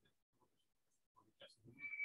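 Near silence in a pause of a spoken lecture, with faint voice sounds in the second half and a brief high-pitched tone near the end.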